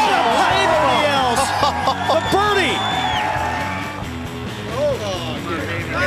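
Golf gallery cheering and shouting, many voices overlapping, over background music.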